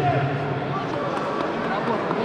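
Indistinct voices, shouts and chatter echoing in a large sports hall, in a lull between louder shouting.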